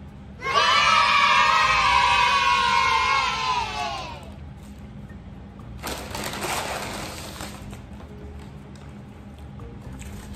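A group of children cheering 'yay', an added sound effect, starting about half a second in and lasting a few seconds, sagging slightly in pitch as it fades. Around six seconds in, a brown paper takeout bag rustles briefly as it is rummaged through.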